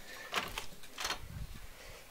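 A door being opened by its knob: two sharp clicks about half a second apart, then a low rumble.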